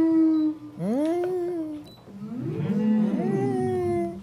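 A woman's drawn-out closed-mouth "mmm" of enjoyment while she chews a bite of tart. There are three long hums, rising and falling in pitch, with the last and longest from about two seconds in to the end.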